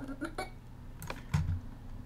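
A few sharp, scattered clicks from a computer keyboard and mouse as the option key is held and the mouse is clicked and dragged in animation software.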